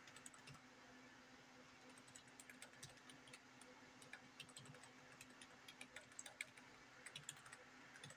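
Faint computer keyboard typing: irregular, quick key clicks, several a second in flurries, over a steady low hum.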